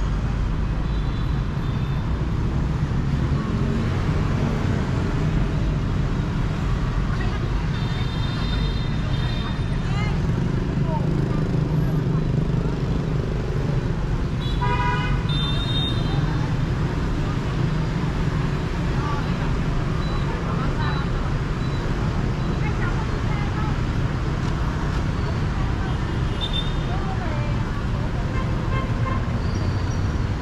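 Busy street traffic of motorbikes, scooters and cars passing with a steady engine rumble, broken by short horn toots, the clearest about 15 seconds in.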